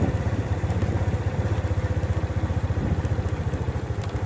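Small motorcycle engine running at low speed, a steady, rapid, even pulse.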